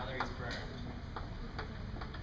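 Chalk writing on a blackboard: a few short, sharp, irregular ticks and light scrapes as the chalk strikes and moves across the board to form letters.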